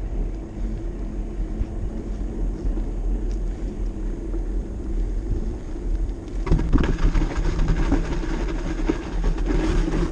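Steady low wind rumble on a bicycle-mounted or handheld action camera's microphone, with tyre noise as a mountain bike rolls over asphalt. About six and a half seconds in, irregular knocks and scuffs join it as the bike comes to a stop.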